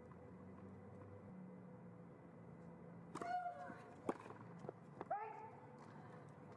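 Quiet tennis court between points with a steady low hum. Two short voice sounds with a rising pitch come about three and five seconds in, with a couple of sharp clicks between them.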